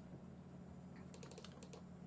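A quick run of faint computer keyboard clicks about a second in, over a low steady hum.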